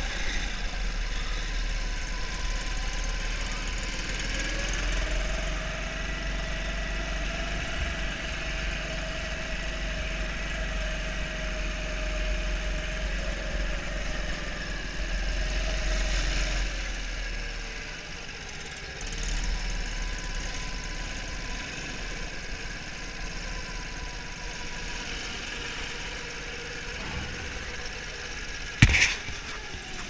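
Go-kart engine running steadily under way, heard from on board the kart, its pitch rising and falling with the throttle through the corners. A single sharp knock near the end is the loudest sound.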